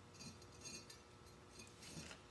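Faint metallic clinks and light rattles from safety wire and small hardware being handled at a two-piece brake rotor.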